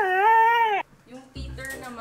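A husky's howl: one call that rises in pitch, holds steady for under a second and cuts off sharply. After a short gap, music starts.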